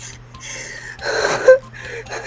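A person's breathy gasp: a rush of air that swells about a second in and cuts off sharply soon after.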